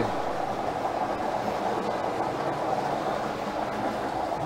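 Numbered bingo balls tumbling in a clear draw globe as it is turned, a steady rolling rattle.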